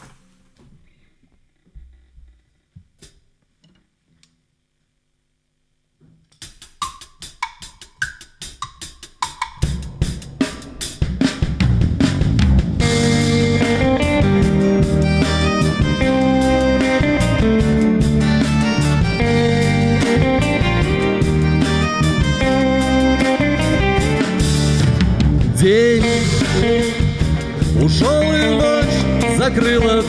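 Live band playing a song's instrumental intro on acoustic guitar, electric guitars and drum kit. After a few seconds of near silence, sparse notes start about six seconds in, the band comes in around ten seconds, and from about twelve seconds the full band plays steadily.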